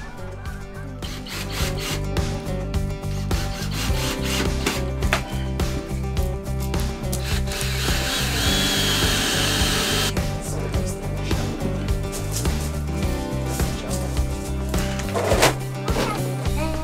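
Cordless drill driving screws into a pine table leg, whirring for two or three seconds about halfway through, among knocks of wood being handled, under background music.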